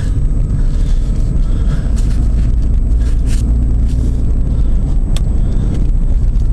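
Car driving off and running along the road, heard from inside the cabin: a steady low engine and road rumble, with a single faint click near the end.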